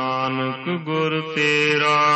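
Gurbani verses chanted by one voice in a slow, drawn-out melody: long held notes that glide between pitches, with a short broken, faltering stretch about halfway through before the next held note.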